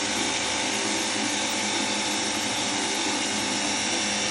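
Cordless battery-powered pressure washer gun running steadily, its motor-driven pump giving a steady whine as the jet sprays into a plastic bucket of water. It has been running for about seven minutes on one battery, which is nearly flat.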